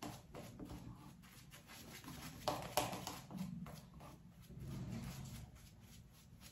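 Synthetic shaving brush working lather onto a stubbled face: a run of faint, quick brushing strokes, a few a second, a little louder about halfway through.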